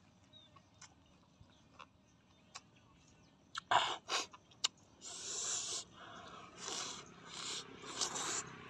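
Close-up eating sounds: a few sharp crunching and smacking mouth noises about four seconds in, then repeated breathy blowing out through pursed lips.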